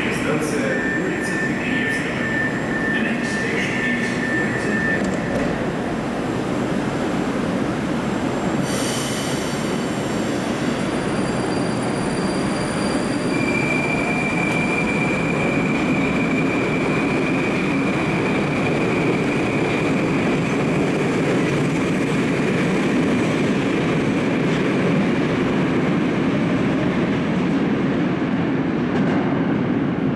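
An 81-765.4 'Moskva-2019' metro train at the platform. A high beeping signal sounds in the first few seconds, and a sharp clatter comes about nine seconds in as the doors shut. The train then pulls out: a steady high whine rides over the rumble of its wheels.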